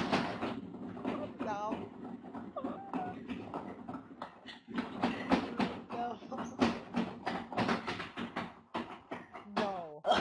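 Drum kit hits mixed with turntable scratching from the chat partner's DJ setup, irregular strikes with quick sweeping scratch sounds.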